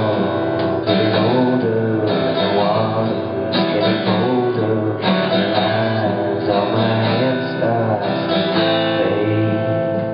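Alt-country band playing live, led by a strummed acoustic guitar with electric guitar, bass and violin, in a steady full-band passage.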